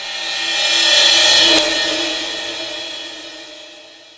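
Short outro logo sting: a swell of cymbal-like hiss that rises to a peak about a second and a half in, over a held chord that then fades slowly away.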